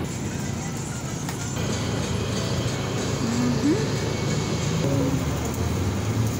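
Steady outdoor street noise with traffic and engine sound, and music playing faintly in the background.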